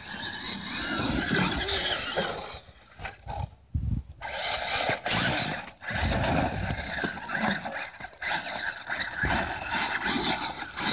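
Traxxas E-Maxx RC monster truck's electric motors whining as it is driven through sand and up a hillside, the whine rising and falling with the throttle, with a lull about three seconds in.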